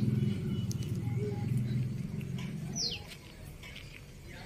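A bird gives one short, high, falling whistled call about three seconds in, over a low steady drone that fades away shortly before it.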